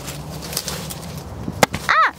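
A sharp click about one and a half seconds in, then a short high-pitched vocal squeal that rises and falls, starting near the end.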